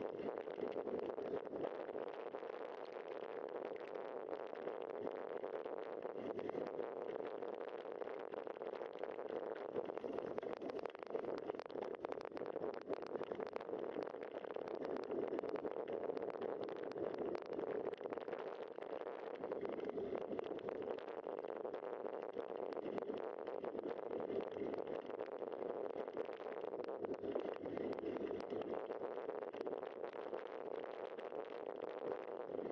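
Bicycle tyres rolling along a dirt trail: a steady rumble with many small irregular crackles and rattles from bumps and grit.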